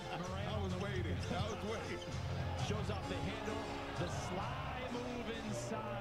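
Basketball game broadcast audio playing at low volume: a commentator talking over arena crowd noise, with a basketball bouncing on the court.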